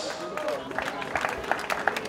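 Scattered applause from a small outdoor crowd: irregular individual hand claps with faint voices beneath.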